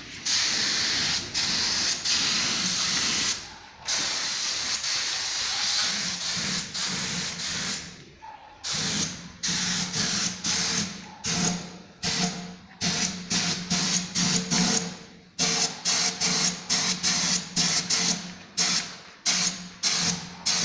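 Gravity-feed paint spray gun spraying with compressed air: long steady hisses for the first several seconds, then many short bursts in quick succession, about two a second. A low hum runs beneath the bursts in the second half.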